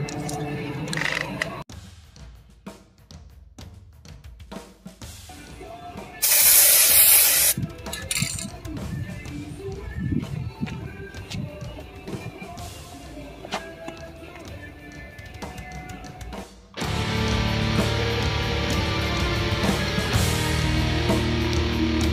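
A hiss from an aerosol spray can, about a second and a half long, a few seconds in, with light handling sounds around it. This is typical of activator being sprayed onto floating hydro-dip film. About three-quarters of the way through, heavy rock music with electric guitar starts abruptly.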